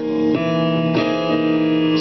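Piano playing sustained gospel-style chords in D-flat, a new chord struck about a third of a second in and another about a second in, each left ringing.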